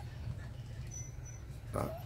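Phú Quốc puppies whimpering faintly, with one short high squeak about a second in, over low steady background noise.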